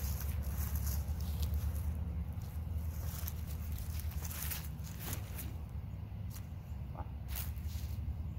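Footsteps and clothing rustle on grass as a disc golf putter is thrown, heard as a few short scuffs and clicks in the second half, over a steady low background rumble.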